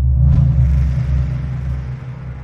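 A deep rumbling boom that starts suddenly and fades slowly: a logo-reveal sound effect.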